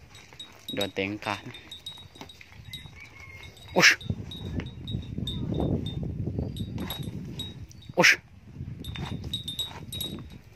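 Zebu bull snorting sharply twice, about four seconds apart, with low breathy noise between the snorts.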